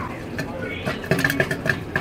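Popcorn kernels popping in the hot kettle of a popcorn machine: scattered, irregular sharp pops several times a second, a batch in mid-cook.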